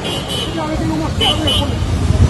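Indistinct voices of people talking in the street over a steady low rumble of vehicles.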